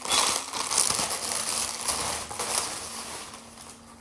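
Clear plastic bag crinkling and rustling as it is handled and a garment is pulled out of it, dying down about three seconds in.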